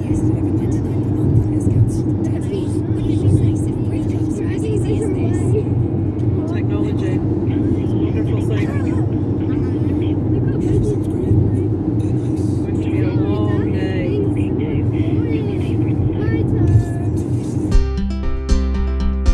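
Steady road and engine rumble inside a moving car's cabin, with children's voices chattering indistinctly now and then.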